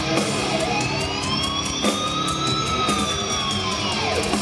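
Heavy metal band playing live, with one high sustained lead electric guitar note that slowly rises and then falls in pitch like a siren over the band.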